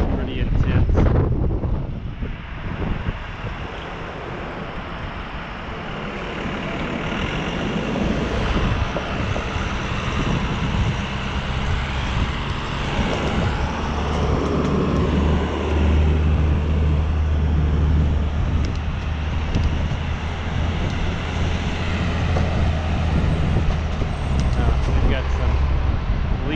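City road traffic heard from a moving bicycle, with wind buffeting the microphone in the first couple of seconds. From about halfway in, a large vehicle's engine drones low and steady, likely the truck ahead.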